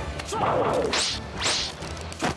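Two sharp whooshes of wooden staffs swung through the air, about half a second apart, the kind of swish added to a staged fight.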